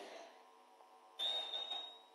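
A shouted chant echoes through a public-address system and dies away. A little over a second in, a faint rush of noise lasting under a second comes through, with a thin, steady high whistle running through it.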